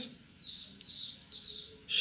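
Faint bird chirping in the background, a few short high-pitched calls.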